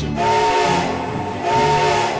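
Steam locomotive whistle blowing twice, a chord of several steady tones over a hiss of steam. The first blast lasts about a second, and the second begins about a second and a half in.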